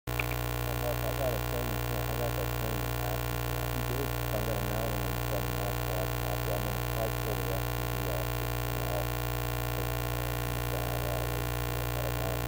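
Steady electrical hum of many fixed tones, picked up on the soundtrack from the powered-up FPV quadcopter's electronics while it sits on the ground with its motors not yet spinning.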